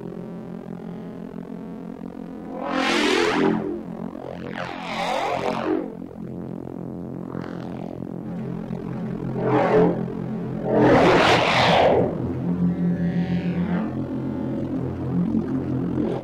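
A synthesized neuro bass patch from Bitwig's Poly Grid holds a low note. Its high band runs through a chorus with the width turned down to get a tearing, flange-like effect. Bright sweeping swells rise out of the bass about five times, roughly every two seconds.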